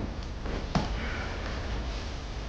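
A single footstep on a wooden floor about three-quarters of a second in, the last of a walker's steps moving away, followed by a soft breathy sound, over a low steady room hum.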